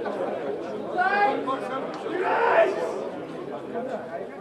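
Several people talking over one another, with a man's raised voice calling out about a second in and a louder outburst of voices around two and a half seconds.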